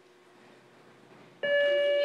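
A buzzer sounds a single steady, loud tone that starts abruptly about a second and a half in and holds level. In an agility Gamblers class, a signal like this marks the end of the opening point-gathering period and the start of the gamble.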